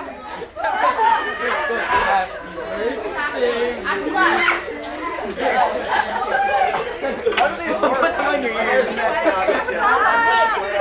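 Indistinct chatter of a group of people talking over one another.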